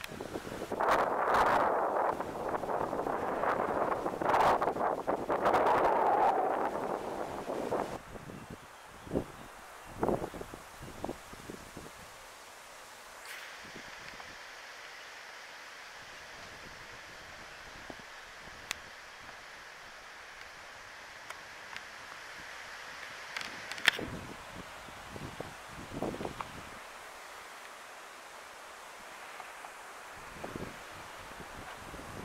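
Wind gusting through leafy trees, in loud surges for the first several seconds, then dying down to a quiet outdoor background with a few brief ticks and clicks.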